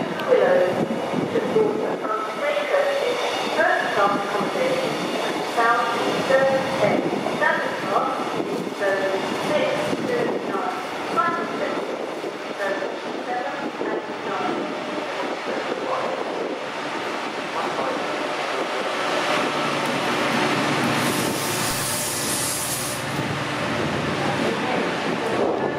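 A passenger train rolls slowly past, its coaches clattering over the rail joints, and a station public-address announcement plays over the first half. Near the end the Class 68 diesel-electric locomotive (Caterpillar V16) at the rear draws level, and its engine and a high hiss grow louder.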